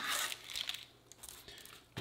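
Parchment paper on a sheet pan crinkling and rustling as baked chicken nuggets are turned over by hand. A few short rustles come in the first second, and the sound is fainter after.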